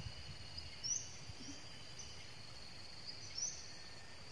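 Steady high-pitched insect drone, with two short rising bird chirps standing out, about a second in and again about three and a half seconds in.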